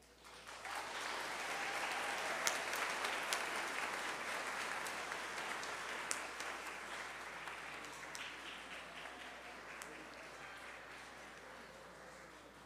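An audience applauding: it starts about half a second in, is at its fullest within a couple of seconds, then slowly dies away.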